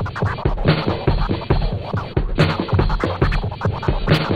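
Hip hop DJ track: turntable scratching over a looped drum beat and deep bass.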